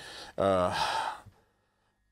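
A man's audible sigh: a faint breath, then one breathy, voiced exhalation falling slightly in pitch, lasting nearly a second, then silence.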